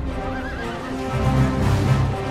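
A horse whinnying, one short quavering call about half a second in, over background music, with a low rumble building in the second half.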